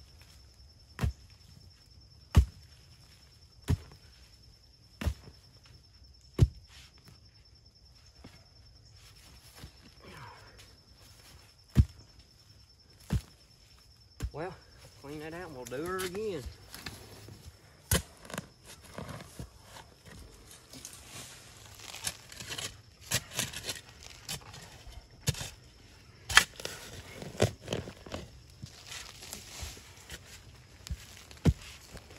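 Mattock striking into packed dirt at a steady pace, about one blow every 1.3 s, then more blows later. Near the end these are joined by a shovel scraping and chopping dirt out of the hole. A short voice sound, like a laugh or hum, comes about halfway through.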